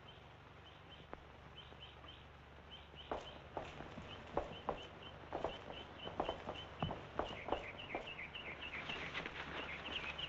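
Quiet footsteps walking at an easy pace, starting about three seconds in, over small birds chirping in short repeated notes throughout.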